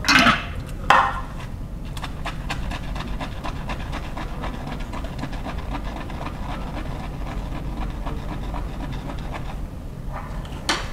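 Shaving brush whipping lather in a small bowl, a wet, rhythmic swishing of quick, even strokes, several a second, with two louder strokes in the first second.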